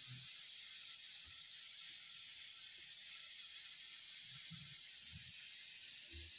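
Steady high hiss of background noise, with a few faint low thumps a few seconds in.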